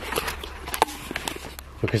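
Scattered light knocks, clicks and rustles of things being handled and moved about, over a steady low hum. A man's voice comes in near the end.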